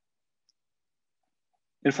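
Near silence, broken by one tiny click about half a second in; a man's voice starts speaking just before the end.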